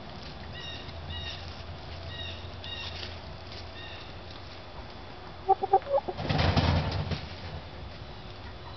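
Chickens in their run: faint, short, high chirps in the first few seconds, a few short clucks about five and a half seconds in, then a chicken flapping its wings for about a second, the loudest sound.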